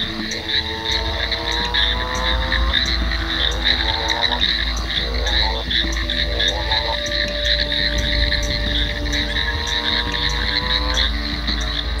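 Frogs calling at a pond, led by long drawn-out calls that rise slowly in pitch like a motorcycle revving and break off every two or three seconds. Underneath runs a steady deep drone, and above it a fast pulsing chorus.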